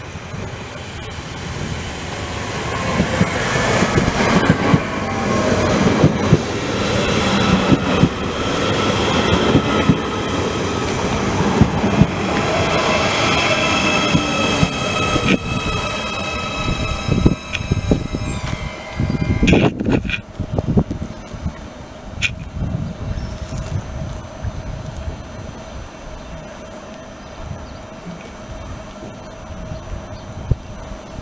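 A Siemens Desiro suburban multiple unit arriving at the platform and braking to a stop: its running noise builds to a loud peak, then several high whines fall in pitch as it slows. A brief falling squeal and a few heavy clunks come about twenty seconds in, after which the stopped train stands with a steady hum.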